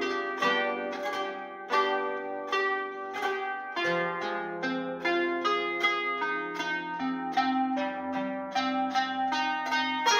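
Qanun, a plucked zither, playing a melody as a steady run of quickly plucked notes, each ringing briefly.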